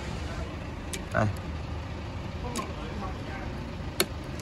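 Steady background noise of street traffic, with a few light plastic clicks as the wiper blade and adapter are handled, the sharpest click near the end.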